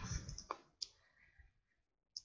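Faint clicks of a computer mouse and keyboard: two close together just after half a second in, and a tiny one later.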